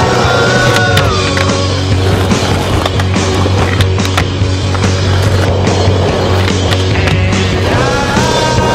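An indie rock song plays throughout. Under it, skateboard wheels roll on concrete, with a few sharp clacks of the board popping and landing.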